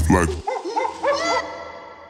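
Electronic dance track ending. The bass and beat cut out about half a second in, a few short sampled sounds rising and falling in pitch follow, and an echo tail fades away.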